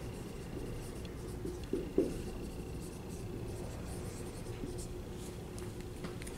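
Dry-erase marker writing on a whiteboard: faint, scratchy strokes with a soft knock about two seconds in, over a faint steady hum.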